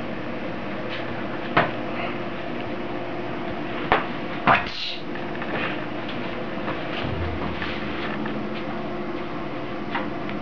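A few short, sharp knocks, about one and a half, four and four and a half seconds in, over a steady background hum.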